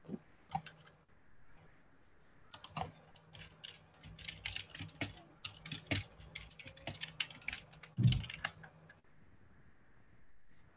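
Typing on a computer keyboard: a couple of key presses early, then a quick run of keystrokes for several seconds, with one heavier knock near the end.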